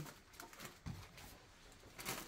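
Near silence: quiet room tone with a few faint, short handling sounds in the first second.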